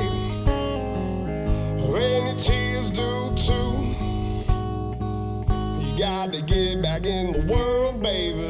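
A live country-blues band playing: electric guitar over drums, with a man singing.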